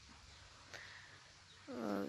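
Quiet background hiss during a pause in a woman's talk. Near the end her voice comes in with a drawn, pitched vocal sound as she starts to speak again.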